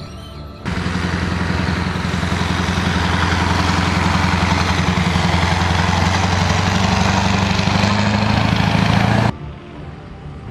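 Heavy eight-wheeled military missile-launcher truck driving on a dirt track, its engine running loud with a steady low drone. The sound cuts in abruptly just under a second in and cuts off abruptly near the end.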